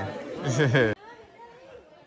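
Close speech that cuts off abruptly about a second in, followed by faint background chatter.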